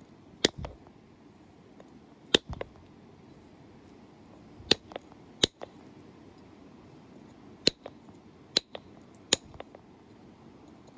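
Antler pressure flaker pushing flakes off the edge of a stone point: a series of about seven sharp clicks, irregularly spaced a second or two apart, each a small flake snapping free.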